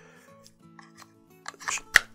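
A KA-BAR TDI fixed-blade knife is pushed into its clip sheath. A few light handling rattles are followed near the end by one sharp click as the knife snaps home and is retained in the sheath.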